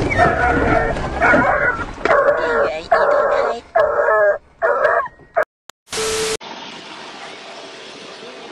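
Repeated high-pitched wailing cries, each about half a second long, stopping about five and a half seconds in. A short steady beep follows, then a low, even background hiss.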